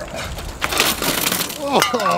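A bicycle and rider crash onto a paved path: a loud, clattering rush of metal and scraping lasting about a second. A man's "oh" follows near the end.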